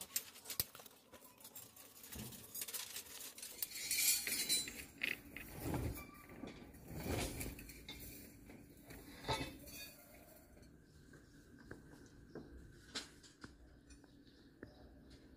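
Steel clinking and scraping: pliers twisting tie wire onto a rebar cage, with irregular taps and clicks of metal on metal. The clinks are busiest through the middle and thin out to faint ticks after about ten seconds.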